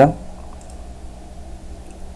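A single computer mouse click, clicking the simulator's Run button about two-thirds of a second in, over a steady low background hiss and hum.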